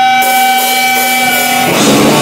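Live rock band: a held, ringing electric guitar tone sustains over cymbal wash, then the full band with drums comes crashing in near the end.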